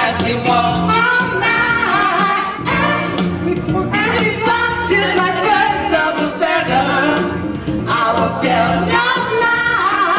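Several women singing together into microphones over a karaoke backing track, amplified through a PA system.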